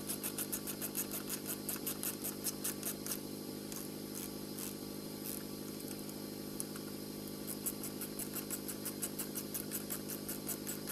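Screws being driven into timber with a hand tool: quick runs of sharp small clicks, about five or six a second, pause in the middle and start again near the end. A steady low hum runs underneath.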